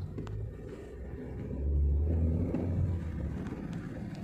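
Car engine and road rumble heard from inside the cabin of a slowly moving car, a low steady rumble that swells about halfway through.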